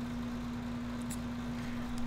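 Steady low hum over faint background noise, the room tone of a voice-over recording, with a faint click about a second in.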